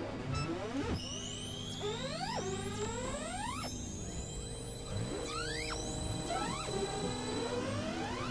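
Experimental electronic noise music: several layered tones sweep up and down in pitch, each glide resetting every second or so, over a steady low drone.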